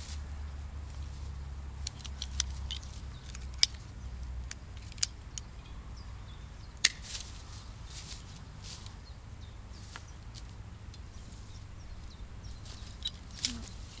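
Pruning shears (secateurs) snipping dry twigs: a scattering of short, sharp clicks and snaps, the three loudest spread through the first half.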